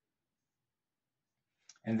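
Near silence, then a man starts speaking near the end.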